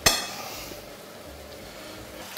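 A metal fork strikes a glass bowl once with a sharp clink that rings briefly, then only faint room tone remains.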